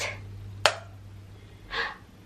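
A single sharp click of a wall light switch being flipped off, about two-thirds of a second in, then a short breathy gasp near the end.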